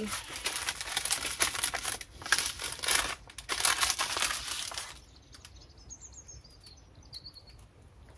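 Small paper seed packet crinkling and rustling in the hands as it is handled and shaken out, in bursts for about five seconds, then much quieter.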